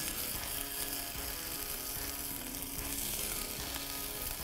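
Potato gnocchi and fiddleheads sizzling steadily in hot olive oil in a cast iron pan over a campfire.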